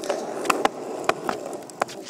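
Skateboard wheels rolling over a concrete sidewalk: a steady rumble broken by several sharp clacks as the wheels cross the cracks and joints in the slabs.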